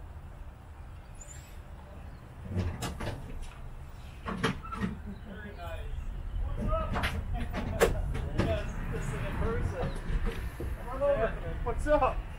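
A few sharp knocks and clunks from handling an open hearse's doors and rear compartment, over a steady low wind rumble, with indistinct talk in the second half.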